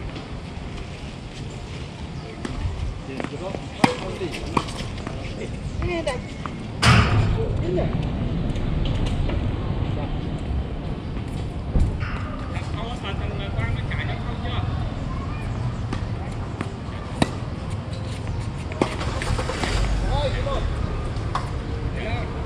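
Tennis balls struck by racquets during a doubles rally: single sharp pops a few seconds apart, the loudest about seven seconds in. Voices are heard in the background.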